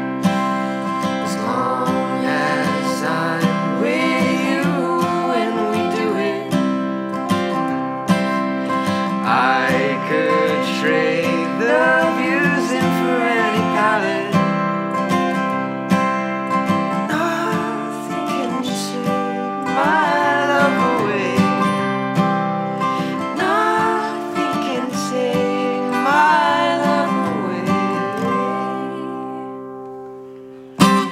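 Strummed acoustic guitar with two voices singing in harmony over it, in a folk duo's closing passage; the chords ring down and the song fades out near the end.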